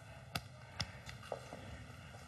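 Footsteps: three faint taps about half a second apart over a quiet room background.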